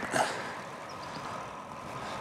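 Faint, steady rolling noise of a bicycle coasting downhill on smooth asphalt: tyre hum and muffled wind.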